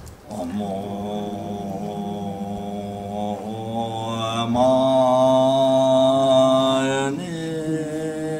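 A Tibetan Buddhist monk's solo voice chanting a prayer in long, drawn-out held notes. About four seconds in, the chant rises to a higher, louder note, held for a few seconds before dropping back near the end.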